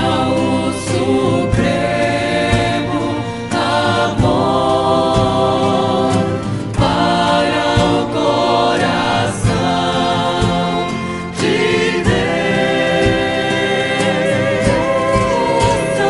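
Mixed men's and women's voices sing a devotional hymn to Saint Joseph in harmony, accompanied by violins and strummed guitars at a steady pulse.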